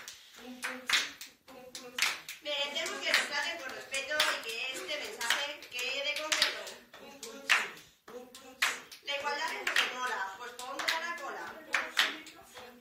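Several people clapping their hands to a steady beat, with voices rapping over the claps.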